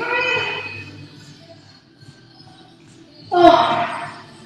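A woman's voice giving two loud shouted calls, one at the start and one about three seconds later, over faint steady background music.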